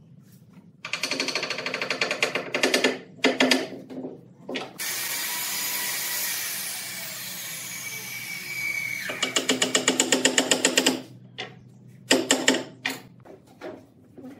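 Cordless drill driving screws into a wooden chair's armrest, in short bursts of rapid chattering pulses with a longer steady run of drilling in the middle.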